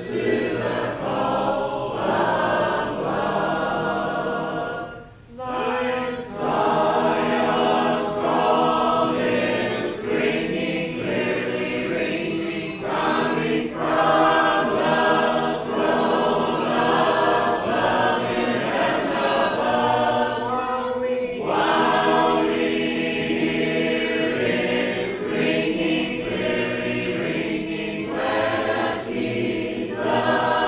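Church congregation singing a hymn a cappella in parts, with a short break between phrases about five seconds in.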